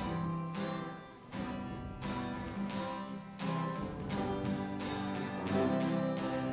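Acoustic guitar strumming chords for a worship song, a steady strum roughly every two-thirds of a second.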